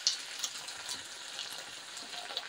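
Masala-coated potato chips sizzling in a frying pan: a low, steady hiss with a few small crackles.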